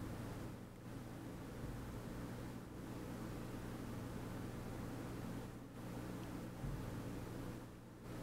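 Faint steady low hum with a soft hiss: room tone.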